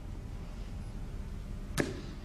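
Low, steady background hum of a film scene's ambience, with one brief sharp sound near the end.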